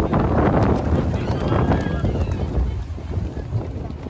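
Wind buffeting the microphone with a steady low rumble, over indistinct chatter from a crowd of people.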